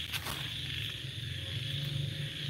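Steady high chirring of night insects, with a low steady hum beneath it and a couple of faint clicks shortly after the start.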